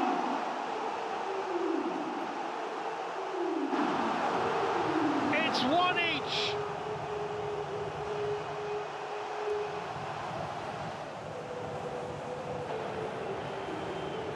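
Stadium crowd cheering a goal as a dense, steady mass of voices, with a few shrill whistles near the middle. The cheering eases off slightly in the second half.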